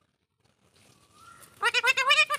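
Alexandrine parakeet vocalizing: after about a second and a half of near quiet, a fast run of short, pitched calls starts, each rising and falling.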